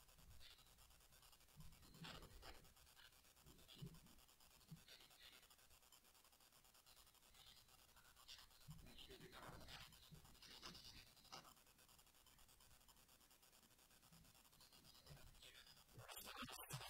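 Near silence, with faint rustling of paper being handled and a few soft knocks, the rustling busiest a little past the middle.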